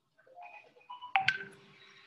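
A string of short steady beep-like tones at changing pitches, with two sharp clicks a little past the middle and a faint held tone after them.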